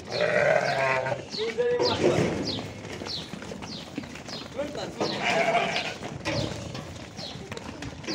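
Sardi rams bleating, two calls of about a second each, one at the start and another about five seconds in.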